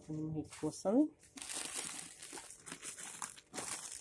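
Plastic wrappers of packaged croissants crinkling and rustling as they are handled and pulled from a shop shelf, a dense crackle lasting about two seconds after a brief voice.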